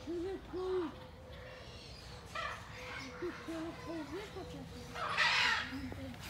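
A series of short hooting calls, each rising and falling in pitch: two at the start, a run of four or five in the middle, and one more at the end. A louder, harsh noisy sound comes about five seconds in.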